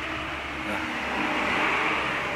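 A road vehicle passing close by, its noise swelling to a peak near the end and then easing off.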